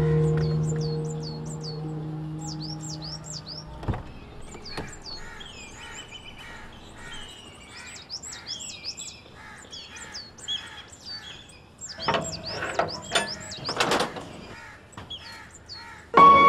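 Birds chirping in quick runs of short, high calls, over soft music that fades out in the first few seconds. A single thump about four seconds in, and a cluster of knocks and rustles near the end.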